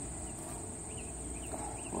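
Steady high-pitched buzz of insects, with a few faint short chirps over it.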